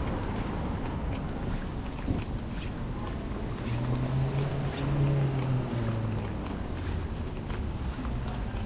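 Street traffic rumble with wind on the microphone; a passing vehicle's engine hum swells and fades about four to six seconds in.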